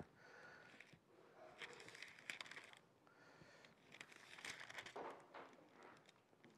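Pages of a Bible being turned by hand: faint papery rustling in a few short spells.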